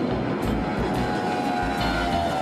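NASA DC-8 jetliner's four CFM56 turbofan engines at takeoff power as it lifts off: a loud steady roar, with a whine that slowly falls in pitch through the second half.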